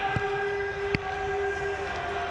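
A long steady horn-like tone from the stadium, its pitch sagging near the end, over crowd noise. Two sharp knocks come through, the louder one about a second in, as the ball is shot and caught by the goalkeeper.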